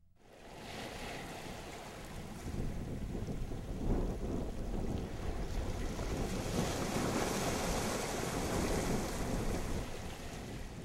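Steady noise of wind and surf, with wind buffeting the microphone. It fades in over the first two seconds or so and then holds.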